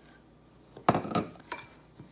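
Metal spoon scraping and clinking against a mixing bowl as melted butter is stirred into cookie crumbs: a scrape about a second in, then one sharp clink.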